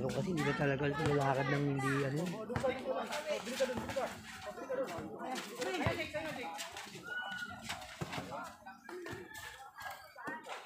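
Voices of players and onlookers calling out and chattering over each other, opening with one long drawn-out call, with a few sharp knocks mixed in.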